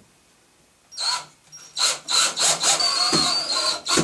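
Cordless drill driving a screw through a metal shower-door wall channel into a wall anchor: a short burst about a second in, then a longer pulsing run with a high whine from about two seconds on. The screw is run gently so as not to over-torque it and pull the anchor out.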